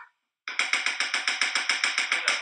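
Kitchen tongs clicked open and shut in a fast, even run of sharp clacks, about ten a second, starting about half a second in.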